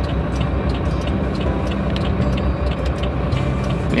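UD Trucks Quester CGE 370's diesel engine idling steadily, heard from inside the cab, with the air-conditioning fan blowing.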